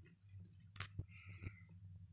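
Rustling fabric and soft clicks as a doll's jumpsuit is handled and pulled off, with one louder rustle a little under a second in, over a faint steady low hum.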